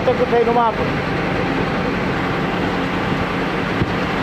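A motor vehicle's engine running steadily at an even speed, with a short stretch of voice in the first second.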